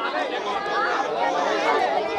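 A crowd of people talking over one another: steady, overlapping chatter of many voices.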